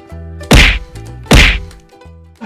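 Two loud cartoon whack sound effects, a little under a second apart, over a music track with a steady low bass line.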